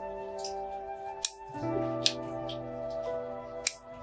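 Bonsai scissors snipping Zelkova shoots: three crisp snips, the first and last the sharpest, over soft background music with slow held chords.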